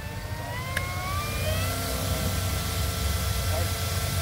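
E-flite Draco RC plane's electric motor and propeller whining as the model taxis under low power. The pitch rises over the first second and a half as throttle is added, then holds steady over a low rumble.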